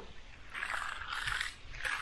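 Steel hand trowel scraping across a freshly mag-floated concrete slab in long strokes, about a second apart. This is the first steel-trowel pass on the wet surface.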